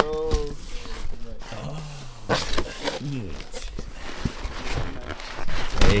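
Cardboard box flaps and a plastic bag rustling and crinkling as a packed exhaust pipe is unwrapped, under excited voices saying "oh".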